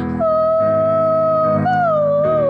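Piano chords under a long, wordless sung note in a woman's voice. The note bends up and back down about a second and a half in.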